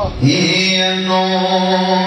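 Man reciting a Pashto naat, unaccompanied solo voice: a short upward glide just after the start, then one long held note.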